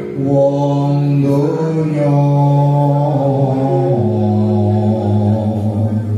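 A man singing Javanese macapat verse solo into a microphone, holding long drawn-out notes; about four seconds in he steps down to a lower held note.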